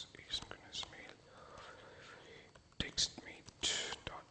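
Soft, near-whispered muttering from a man, with a few laptop keyboard clicks as a terminal command is typed.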